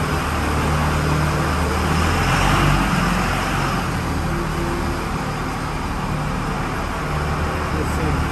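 Road traffic noise with a steady low engine hum, swelling as traffic passes about two to three seconds in.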